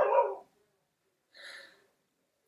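A dog barks once, short and loud, followed about a second and a half later by a fainter short sound.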